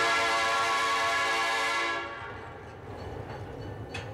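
Train horn sounding one long, steady blast for about two seconds, then dying away.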